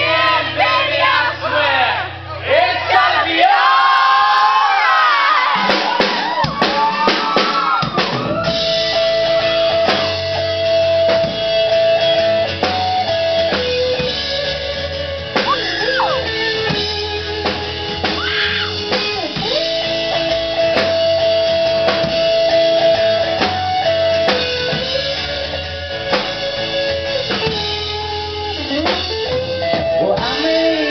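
A rock band playing live: strummed acoustic guitar, electric guitar and drum kit under sung vocals. The first several seconds are looser, with sliding vocal lines, then the full band comes in about eight seconds in, with long held notes over a steady beat.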